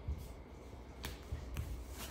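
A few faint, sharp clicks over a low steady hum.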